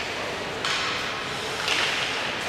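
Ice hockey play echoing in an indoor rink as play restarts after a faceoff: a sudden sharp clack about two-thirds of a second in, then skates scraping the ice, with a louder scrape near the end.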